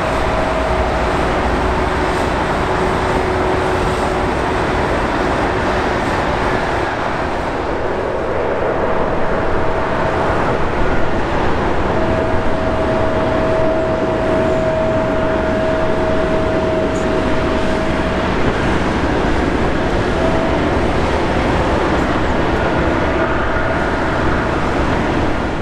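Steady jet engine noise of airliners taxiing: a broad, continuous rumble with faint steady tones that come and go.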